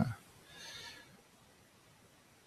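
The last of a man's spoken word, then a brief faint breathy hiss, then near silence: room tone.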